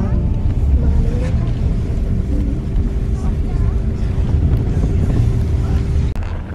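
Tour bus running along the road, heard inside the cabin: a steady low rumble of engine and road noise, with a thin steady hum joining in about two seconds in.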